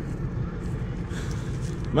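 Tractor engine running steadily under load while pulling a plough, a low even rumble with no change in pitch.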